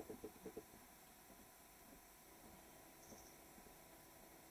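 Near silence: faint steady background hiss, with a few soft thuds in the first half second and a brief faint high tone about three seconds in.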